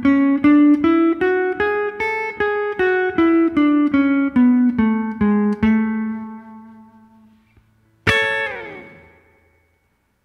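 Fender Stratocaster electric guitar playing the A major scale one picked note at a time, about three notes a second: up an octave from the root A, back down, one step below the root and back to it. That last note rings out, then a single chord is strummed about 8 seconds in and left to fade.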